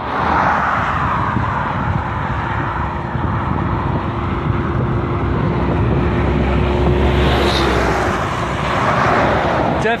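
Road noise from a moving bicycle on a highway shoulder: wind on the microphone and motor traffic. A steady hum and a deeper rumble swell through the middle seconds, as from a vehicle going by, and fade near the end.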